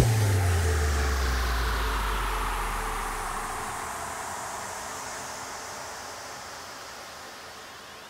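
Sound-design downlifter at the end of an electronic music track: a deep boom whose pitch falls away over about three seconds under a downward-sweeping whoosh of noise, the whole fading out slowly.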